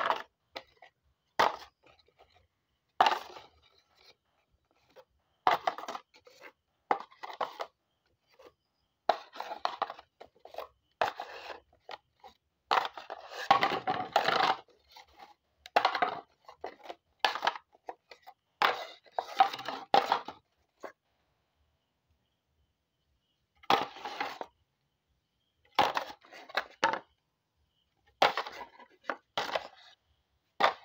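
Dry, stiff palm-leaf bowls being picked up, shuffled and knocked against one another in their stacks: a string of short, irregular scraping and knocking noises, with a pause of a couple of seconds about two-thirds of the way through.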